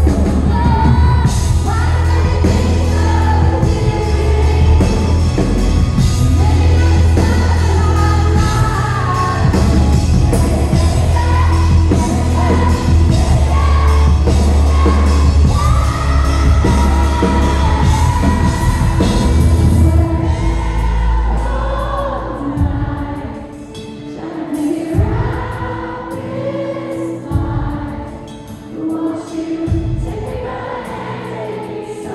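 Live pop-rock ballad: a woman singing lead over a full band with heavy bass and drums. About 20 seconds in the bass and drums drop out and she sings on over softer accompaniment, noticeably quieter.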